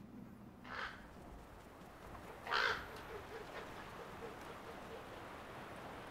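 Two short bird calls, about two seconds apart, the second louder, over a faint steady background.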